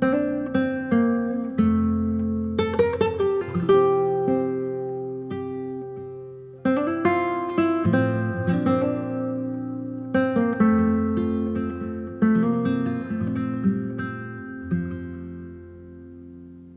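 Background music: an acoustic guitar plucking and strumming a gentle chord progression, with notes that ring and decay between strums.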